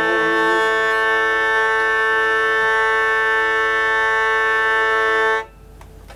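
Hurdy-gurdy playing a held, buzzing drone chord with a sustained melody note. It cuts off suddenly about five and a half seconds in, the final chord of the piece.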